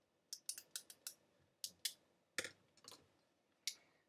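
Pens and pencils clicking and clattering against each other as a pencil case of school supplies is rummaged through: about a dozen short, faint clicks in loose clusters.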